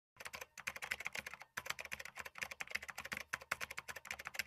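Keyboard-typing sound effect: rapid, uneven computer-key clicks accompanying on-screen text being typed out, with short breaks about half a second and a second and a half in.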